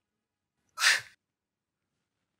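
A single short, breathy puff of air about a second in, like a man's brief laugh through the nose.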